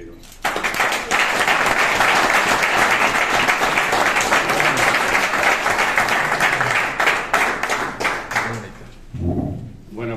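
A small group applauding, starting suddenly about half a second in and dying away near the end, with voices as it fades.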